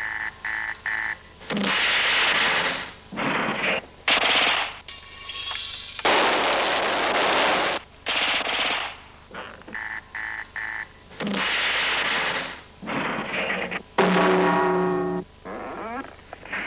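Battle sound effects: short rattling bursts of automatic-weapon fire alternating with longer noisy blasts lasting a second or two. The sequence repeats roughly halfway through. A brief pitched tone rings out near the end.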